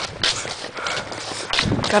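Footsteps of a person hurrying across a grass lawn: an uneven run of dull thuds.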